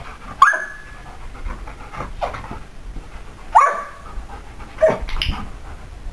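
Belgian Shepherd dog giving short, high-pitched yelping barks, three loud ones about half a second, three and a half and five seconds in, with quieter ones between.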